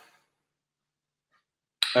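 Near silence: a pause in a man's talk, his voice trailing off at the start and coming back with an "uh" near the end.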